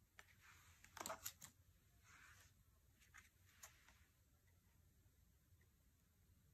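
Faint handling of oracle cards: a few soft slides and small clicks as cards are drawn and swapped, the sharpest clicks about a second in.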